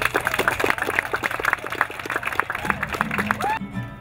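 A small crowd applauding with dense, irregular clapping, which stops abruptly about three and a half seconds in. Music comes in near the end.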